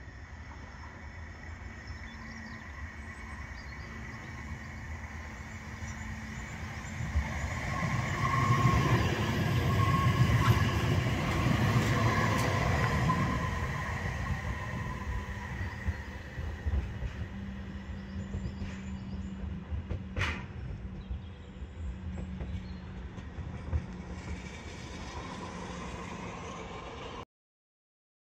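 Bombardier Flexity M5000 tram running on ballasted track, growing louder as it approaches and passes, then fading as it draws away, with a steady high-pitched whine over the running noise. A single sharp click comes about twenty seconds in.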